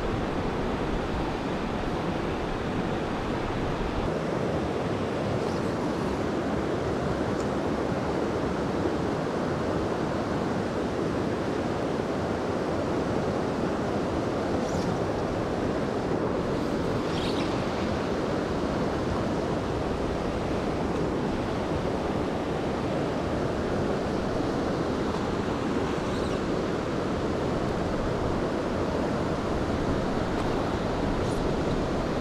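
Steady rushing of river water running over a small cascade and riffle.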